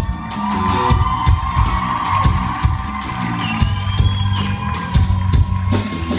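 A live band playing amplified music. A drum kit keeps a steady beat under a bass line and a long held lead note.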